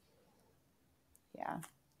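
Near silence for over a second, then a woman's brief spoken 'yeah', with a faint click or two around it.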